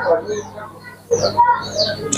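A flock of young deshi (native Bangladeshi) chickens peeping: many short, high chirps, each falling in pitch, overlapping one another.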